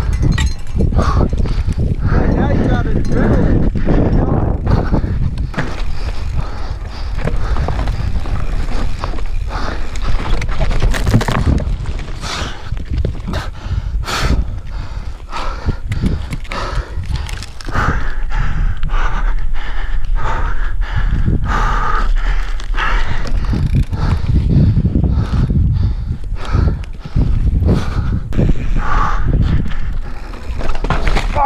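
Mountain bike ridden fast down a rough dirt and rock trail, heard from a helmet camera. Wind rumbles steadily on the microphone, and the tyres and frame clatter and knock over rocks and bumps.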